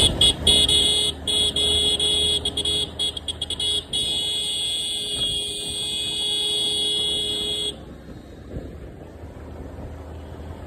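Motorcycle horn, loud and high-pitched, sounded in a string of short toots and then held for about four seconds before it cuts off, over the low steady rumble of the bike riding along.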